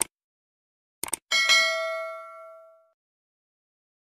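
Subscribe-button sound effect: a sharp click at the start and a couple of quick clicks about a second in, then a bright notification-bell ding that rings on and fades away over about a second and a half.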